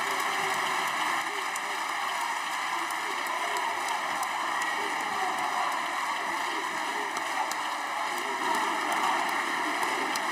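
A large assembly of people clapping: dense, sustained applause that keeps an even level throughout, with voices mixed in under it.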